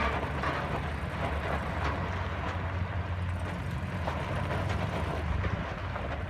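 Pickup truck engine running at low speed as it tows a loaded car trailer, a steady low hum with the trailer rolling over gravel and a few faint clicks.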